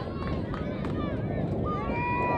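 Shouts and calls of voices across a soccer field, one longer call held near the end, over steady low outdoor noise.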